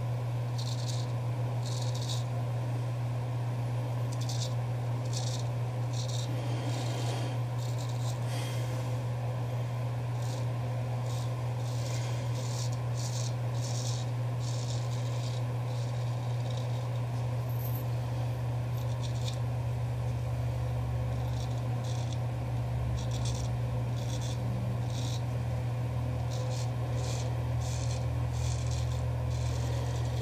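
Custom straight razor scraping through lathered stubble in short strokes, a soft rasp coming every second or so, over a steady low hum.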